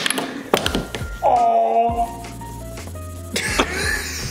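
Background music with held notes over a steady bass line. A few sharp plastic knocks from a mini tabletop air hockey game, mallets striking the puck, come about half a second in and again near the end.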